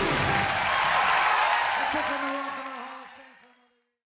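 Audience applauding and cheering just after a live band finishes a song, with a voice heard over it. The sound fades out to silence about three and a half seconds in.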